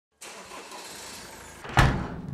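A van driving, heard as a steady rush of vehicle noise with a faint falling whine, then a single loud thump near the end.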